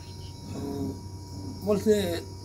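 A man's voice speaking in short phrases, soft about half a second in and louder near the end, over a steady high-pitched chirring like insects in the background.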